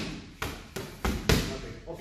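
Boxing gloves landing on focus mitts: a quick string of about four sharp smacks in two seconds, each ringing briefly in the hall.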